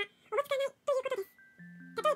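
Rapid, high-pitched Japanese narration, a sped-up reading, over soft music-box background music with held notes.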